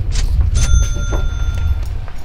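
A single bright metallic ding, like a small bell, starts about half a second in, rings steadily for just over a second and then stops. It sits over a continuous low rumble on the microphone.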